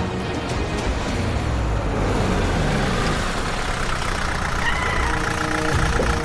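A motor vehicle's engine running, with background music playing over it.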